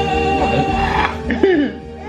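Background music with held tones, fading about halfway through, and a short rising-and-falling vocal sound about a second and a half in.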